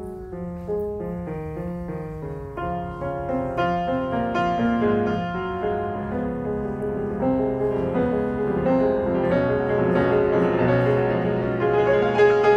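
Grand piano played solo in a classical piece: a continuous flowing run of notes that grows gradually louder.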